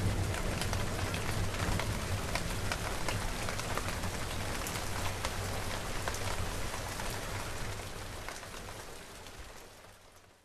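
Rain falling steadily, full of sharp drop ticks over a low rumble, fading out over the last two to three seconds.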